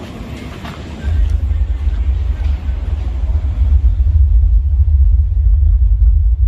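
Car audio subwoofers playing heavy, deep bass. It kicks in about a second in and stays loud and steady, almost all of it very low in pitch.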